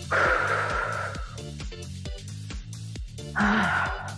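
Upbeat electronic workout music with a steady beat. Two louder hissing swells rise over it, one at the start and one near the end.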